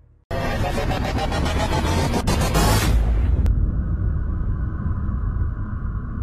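Cinematic logo-intro sound design: after a short silence, a dense rushing noise starts suddenly and runs for nearly three seconds. Then, after a single click, a low sustained drone continues with a steady hum above it.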